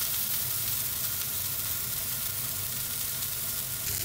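A block of beef searing in a hot frying pan over a gas burner, sizzling steadily as it is browned on all sides for roast beef.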